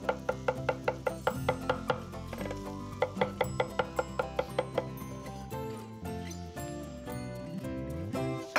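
Chef's knife mincing thyme on a wooden cutting board: quick, even chops about four or five a second for the first five seconds or so, over background music.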